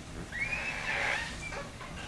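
Palms being rubbed together, a soft rubbing noise through most of the first second and a half, with a brief high tone that rises and falls over it about half a second in.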